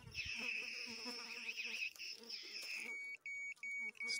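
Homemade ionic/electrostatic long range locator starting to beep about three seconds in: a high electronic tone in short repeated beeps, about three a second, signalling that it senses the buried gold target beneath it. Before the beeping, a high wavering insect-like buzz.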